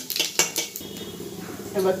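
Flat metal spatula knocking and scraping against an aluminium kadai: a few sharp clinks in the first second, then quieter.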